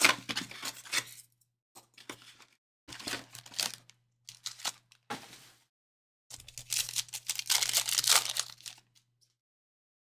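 Cardboard card box being torn open and its foil trading-card packs handled and ripped open, in a run of short tearing and crinkling bursts; the longest and loudest comes in the second half, as a pack wrapper is torn.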